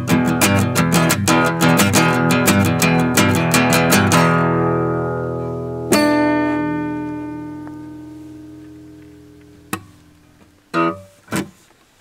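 Acoustic guitar played in quick, even strokes to close a song, then a final chord struck about six seconds in and left to ring out and fade. A few short knocks near the end.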